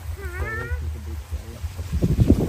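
A small child's short, high wordless call, rising in pitch, followed by a few faint softer sounds.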